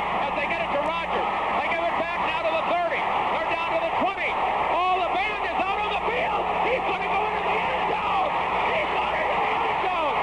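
Excited play-by-play announcer shouting nonstop over a loud, steady stadium crowd roar, with the thin, treble-less sound of an old radio broadcast.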